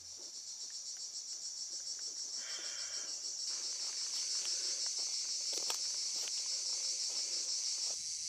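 Insects chirring in a high, finely pulsing drone that grows louder over the first few seconds, with a few light clicks near the middle.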